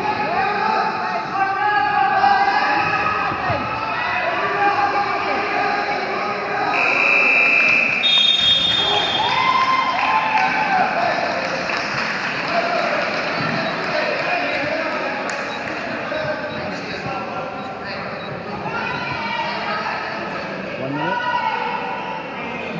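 Spectators and coaches shouting and talking over one another in a gym during a wrestling bout. Around seven seconds in, a brief high two-step tone sounds for about a second and a half.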